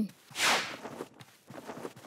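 Cartoon Foley: a short swish about half a second in, followed by faint soft steps.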